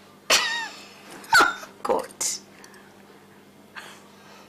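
A woman's short scornful laugh: a sudden falling "hah", then a couple more short bursts around a muttered "God".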